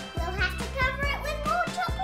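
A young girl talking over background music with a steady beat.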